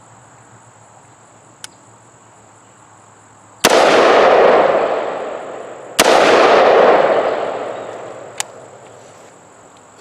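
Two gunshots from an AR-15 pistol, fired one-handed about two and a half seconds apart; each crack is followed by a long echo that rolls away over two to three seconds. Crickets chirp steadily underneath.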